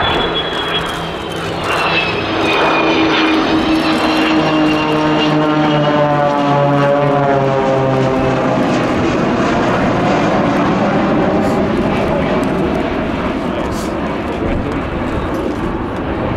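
Boeing 727's three Pratt & Whitney JT8D turbofan engines in a low flypast, loud and steady. A high whine falls in pitch a couple of seconds in, and the tones slide down as the jet passes. The propeller engines of the accompanying Extra 300 aerobatic planes are mixed in.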